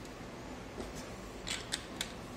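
Light plastic clicks from a toilet cistern's flush valve top as it is handled: a few sharp clicks, the loudest two close together in the second second, over a steady low background noise.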